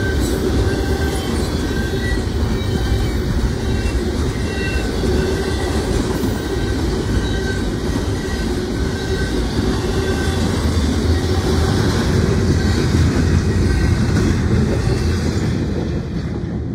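Double-stack intermodal freight cars rolling past at close range: a steady, loud rumble of steel wheels on rail, with faint squeals coming and going.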